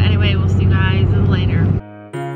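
Steady low drone of road and engine noise inside a car cabin, under a woman's talking. It cuts off abruptly near the end, where a soft held musical chord begins.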